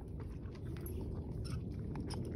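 Horse mouthing a freshly fitted snaffle bit: scattered light clicks and clinks of the metal bit and curb chain, over a low steady rumble.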